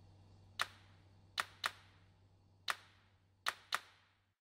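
Six short, sharp clicks at uneven intervals, two of them in quick pairs, over a faint steady low hum.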